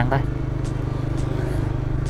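Motor scooter engine running steadily while riding at low road speed, a low, even hum with road and wind noise.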